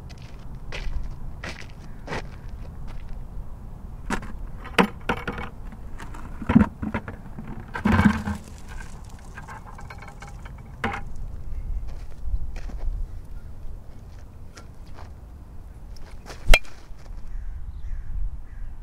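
A low rumbling noise with scattered clicks, knocks and crackle at irregular intervals, and one sharp crack, the loudest sound, about sixteen and a half seconds in.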